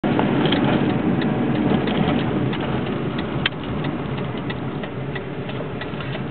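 Road and engine noise inside a moving car, slowly easing off, with scattered light clicks.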